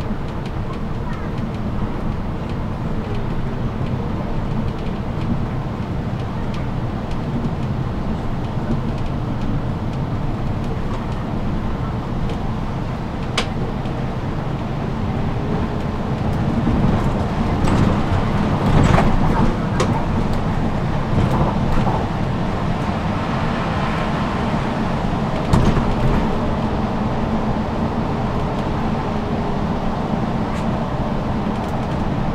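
Inside a moving city bus: the engine and road noise run steadily, a low rumble with a faint hum above it. A few sharp clicks and knocks come partway through, several of them together near the middle.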